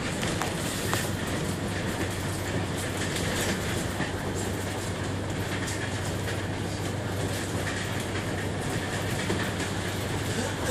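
Cabin noise inside a moving bus: a steady low engine drone under road and tyre noise, with light rattles of the bodywork.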